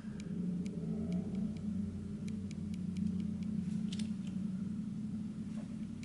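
A steady low hum from a running machine, with a few faint light clicks as copper rounds are handled.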